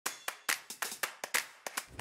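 A quick, irregular run of sharp clap-like hits, about a dozen in two seconds, each dying away fast.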